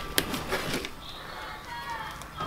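A sharp click as metal engine parts are handled, with a few lighter knocks after it, over faint background music.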